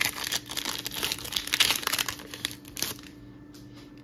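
A foil Pokémon booster pack wrapper being torn open and crinkled by hand: a dense crackling that dies down about three seconds in.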